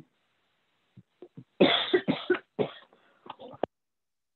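A man laughing briefly in a few short, breathy bursts, the loudest about halfway through.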